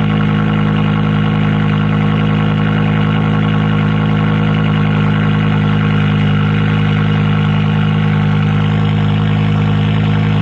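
Straight-piped BMW E60 M5's 5.0-litre V10 idling steadily after a cold start, a low, even exhaust note through the open pipes.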